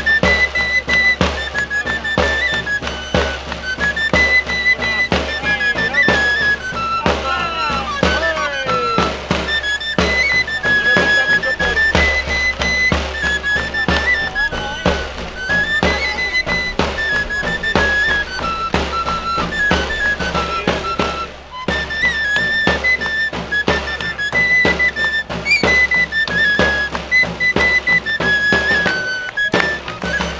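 Andalusian pipe and tabor (flauta and tamboril) played together by one tamborilero: a high, repeating pipe melody over steady drumbeats. The playing breaks off briefly about two-thirds of the way through, then goes on.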